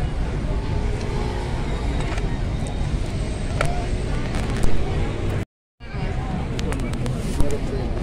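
Busy city street background: a steady low traffic rumble with voices in the background and a few light knocks. The sound drops out completely for a moment about five and a half seconds in.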